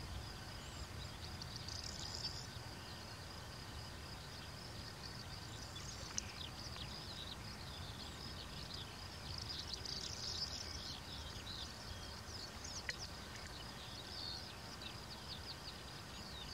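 Rural outdoor ambience: a steady high insect-like buzz, with small birds chirping now and then, more busily around the middle and near the end, over a low rumble.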